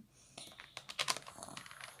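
Light plastic clicks and rustles of small toy action figures being handled and moved about on a plastic Lego baseplate, with a quick run of taps about a second in.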